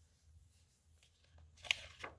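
Near silence, then from about a second and a half in, a faint rustle and one brief crisp scrape of a hardcover picture book's paper page being handled and turned.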